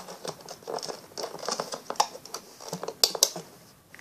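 Irregular light clicks and scratches of a plastic hook and rubber loom bands catching and snapping on the pegs of a plastic loom, a few a second.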